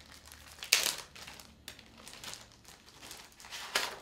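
Paper and plastic packaging being handled and opened by hand: rustling and crinkling in several short bursts, the loudest about a second in and another sharp one near the end.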